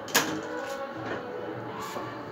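A single sharp knock just after the start, over faint background music with steady held tones.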